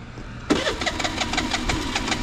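Scooter's electric starter cranking the engine, which starts about half a second in as a rapid, even clatter and turns over without catching.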